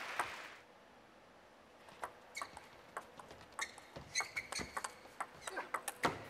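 Table tennis rally: the plastic ball knocking off bats and table in an irregular series of sharp clicks from about two seconds in, with a few short high shoe squeaks on the court floor.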